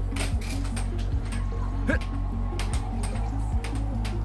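Air hockey being played: irregular sharp clacks of the puck striking mallets and the table rails, over background music with a low bass line.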